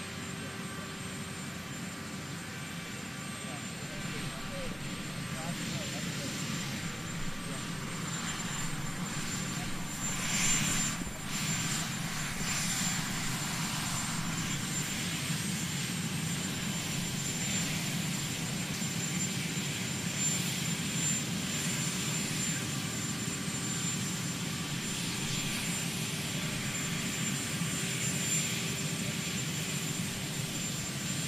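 Steady aircraft engine noise: a constant high whine over a low rumble, growing a little louder about a third of the way in.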